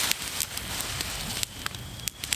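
Wood campfire crackling, with irregular sharp pops scattered through.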